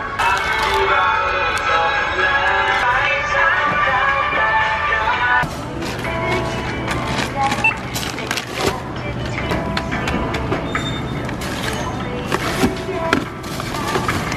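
Music for about the first five seconds, which stops suddenly; after it, supermarket checkout sounds: a steady low hum with frequent clicks and knocks of goods being handled, and a short high beep.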